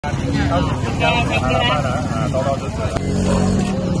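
People talking at close range over the steady low running of a motor vehicle engine.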